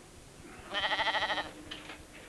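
A lamb bleats once, a single quavering call lasting under a second, about midway through.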